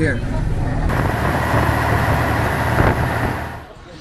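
Shuttle bus on the move, heard from inside the cabin: a steady low engine and road rumble, with a loud hiss of wind and road noise joining about a second in. Both stop abruptly near the end.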